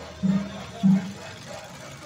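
Festival music with a deep drum beating twice, about half a second apart, over the hubbub of a crowded street.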